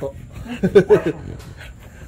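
An American Bully dog panting, with a man's laughter loudest about half a second to one second in.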